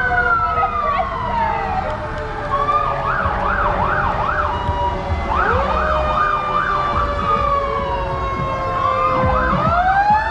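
More than one emergency-vehicle siren sounding at once: slow rising and falling wails overlapping with stretches of fast yelp, about three warbles a second. Car engines rumble underneath.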